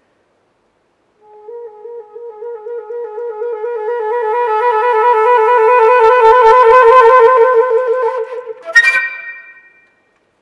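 Solo concert flute playing a trill that starts very softly, swells to very loud and falls back, the trill speeding up and edging higher in pitch as it goes. Near the end a sharply attacked higher note cuts in and fades away.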